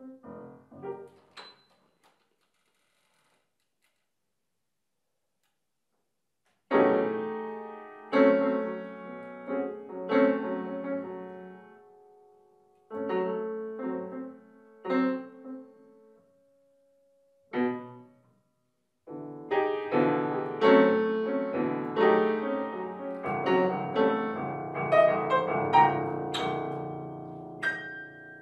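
Grand piano played solo in a contemporary piece. A few soft notes open, then about five seconds of silence. Loud, sharply struck chords follow, separated by pauses, and they build into a dense, continuous passage over the last nine seconds.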